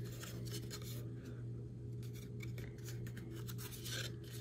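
An accordion-folded strip of patterned paper being handled and flexed between the fingers: faint paper rustling and light ticks, over a steady low hum.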